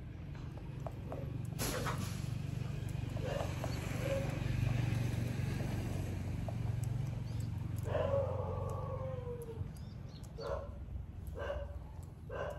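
Animal calls over a steady low hum: one drawn-out call falling in pitch about eight seconds in, then short yelps near the end. There is also a brief scratchy noise near the start.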